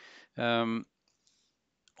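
A man's voice in a pause: a faint breath, then a short, flat hesitation sound like "ehm", then near silence with a faint click just before the end.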